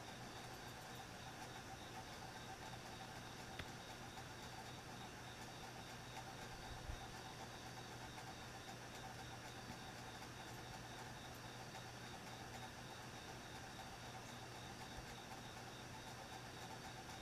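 Faint steady room tone: an even hiss with a low hum and a few faint steady higher tones, broken by a couple of faint soft knocks.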